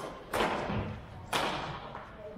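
Two sharp badminton racket strikes on a shuttlecock about a second apart, each echoing through a large gym hall.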